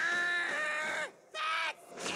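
A cartoon character's voice crying out: a long held cry of about a second, a short break, then a briefer second cry.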